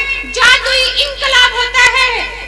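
A woman reciting verse in a sung, melodic style into a microphone, with held notes that waver and fall in pitch.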